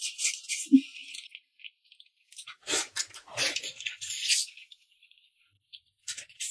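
Close-up mouth sounds of eating: wet chewing and smacking on a mouthful of rice mixed with dishes. It comes in two spells, in the first second and again from about two and a half to four and a half seconds in.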